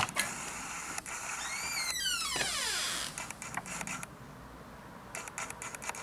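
A door creaking open: a squeal that slides steeply down in pitch over about a second and a half, starting about one and a half seconds in. A sharp click comes at the very start, and a few light clicks come near the end.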